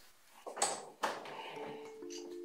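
A wooden interior door being opened, heard as two short noisy sounds about half a second and a second in. Soft sustained music tones come in near the end.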